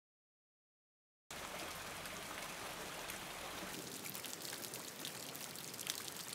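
Silent for about a second, then steady rain falling on a wet paved patio: an even hiss with scattered drip ticks growing more distinct in the second half.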